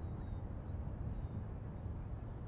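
Wind rumbling on the microphone, with a few faint, high bird chirps over it.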